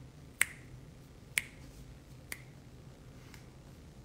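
Three sharp finger snaps about a second apart, each softer than the one before.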